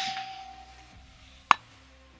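Fading echo of a 6 Creedmoor rifle shot, then about a second and a half in a single short, sharp ping of the bullet hitting a distant steel target.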